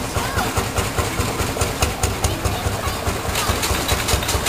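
Miniature steam traction engines passing close by, their engines running with a rapid, regular beat of several strokes a second.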